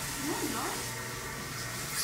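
Faint voices in the background over a steady room hiss, with no distinct louder sound.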